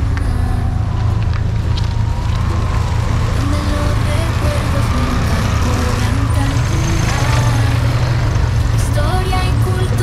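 Street traffic: vehicle engines running with a steady low rumble, including a quad bike (ATV) passing close, with music playing over it.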